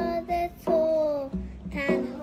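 A child singing held, gently sliding notes over a musical backing with a deep recurring bass beat.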